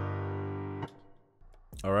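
A three-note chord from a software instrument played back from the FL Studio piano roll, fading slowly and cutting off a little under a second in. This is the chord voicing after its top note has been raised one step, so that it no longer sounds off.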